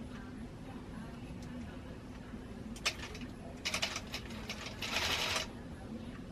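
Longarm quilting machine sewing a half-inch basting stitch. A single click comes about three seconds in, then a quick run of ticks, then a short burst of stitching about five seconds in.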